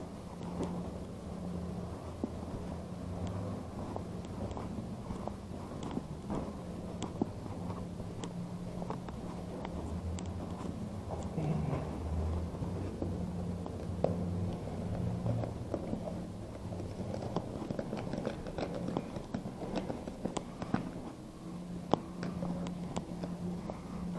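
Footsteps of someone climbing a stairwell, with many small scattered knocks and rustles over a steady low rumble.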